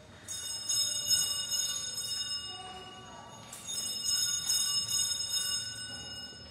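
Sanctus (altar) bells rung at the elevation of the chalice after the words of consecration. There are two peals of high, bright, overlapping bell tones, the first just after the start and the second about three seconds later, each ringing on and fading.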